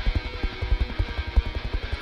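Background music with guitar over a fast, steady beat.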